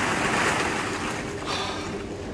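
Many hollow plastic ball-pit balls clattering and rustling together as a person plunges in and thrashes among them. It is a rushing rattle, loudest in the first half second and fading away.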